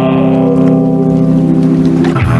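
Rock soundtrack music: a held chord with a single tone above it that slowly falls in pitch.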